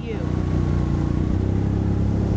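Quad ATV engine running steadily as it drives away across beach sand, a low engine note that swells just after the start and then holds.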